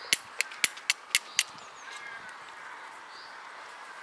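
Flint and steel: a steel striker raked down a piece of flint, about six sharp strikes at roughly four a second in the first second and a half, throwing sparks onto tinder. After that the strikes stop, with a few faint bird calls.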